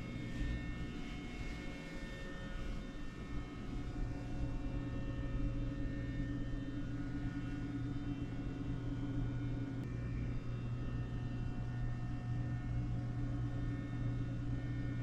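A steady low hum of indoor room tone, with faint steady tones above it and no sudden sounds.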